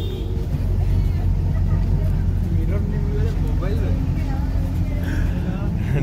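Steady low rumble of a bus engine and road noise, heard from inside the moving bus, with faint voices in the cabin.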